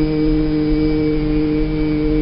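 Chanting voices hold one long, steady note at the end of a line of khassida recitation, over a low hum.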